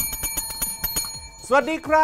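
Service bell on a desk struck once: a sudden bright ring of several high tones that fades over about a second.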